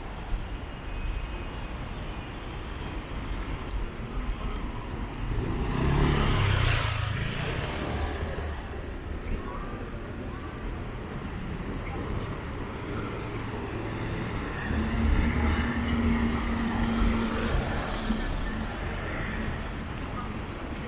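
City side-street ambience: a steady traffic hum, with a car passing close by about six seconds in and another vehicle going by with a steady engine hum later on.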